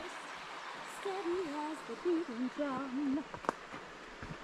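A woman's soft voice, wordless and wavering in pitch, over the steady noise of a flowing creek, with a single sharp tap about three and a half seconds in.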